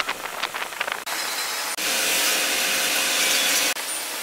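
Short squeals and scraping from an electric train's wheels on curved track. About a second in, the sound cuts to a steady rushing noise that grows louder and hissier for a couple of seconds.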